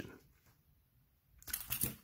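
Near silence, then about one and a half seconds in a short cluster of clicks and rattles: the metal snap hook and key ring of a hand-held strap-and-cone device knocking as it is handled.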